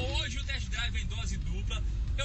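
A man talking inside a moving car, over the steady low rumble of road and engine noise in the cabin of a Renault Sandero Stepway.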